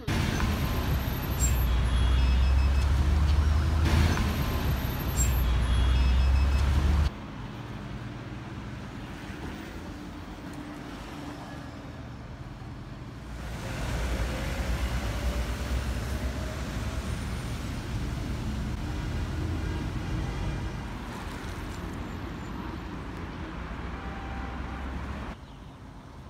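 City bus running, heard from inside the moving bus, its engine loud and low. About seven seconds in it cuts abruptly to quieter street traffic noise, which swells for a while as vehicles pass.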